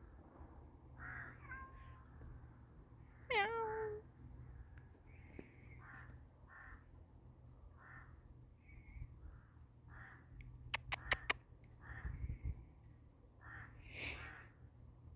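A cat meows once, about three seconds in: a short call that drops in pitch and then holds. Later come four quick, sharp clicks, with faint short calls scattered through the background.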